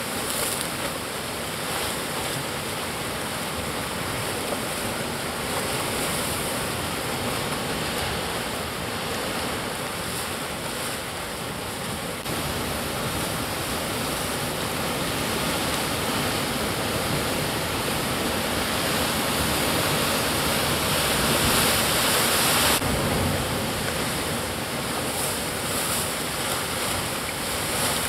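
Sea surf breaking and washing against rocks: a steady rush of waves. It swells louder for a couple of seconds about three-quarters through, then drops off abruptly.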